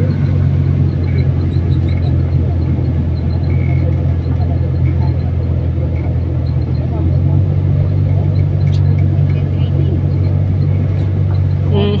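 Motorized tricycle's motorcycle engine running steadily, a loud constant low drone.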